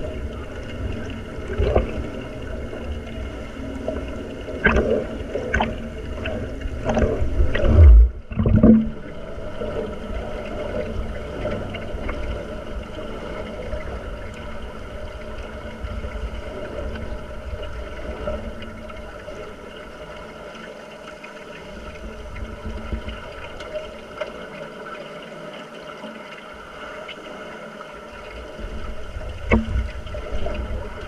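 Muffled underwater noise recorded in a swimming pool: a steady low rumble and hiss with scattered clicks and knocks, and two heavy thumps about eight seconds in. It grows louder again near the end.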